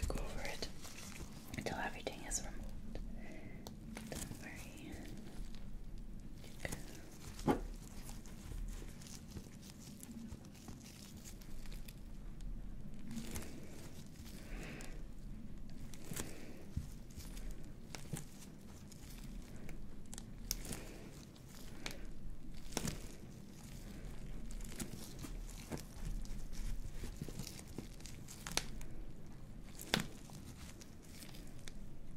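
Disposable gloves rubbing and squeezing a silicone pimple-popping practice pad, with soft crinkling and scattered small clicks; one sharp click about seven and a half seconds in.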